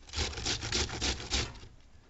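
Cabbage grated by hand on a flat metal grater: a quick run of rasping strokes, about five a second, that dies away about a second and a half in.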